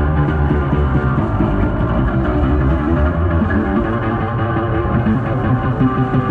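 Electric bass guitar played solo through a loud amplifier, a fast unbroken stream of notes.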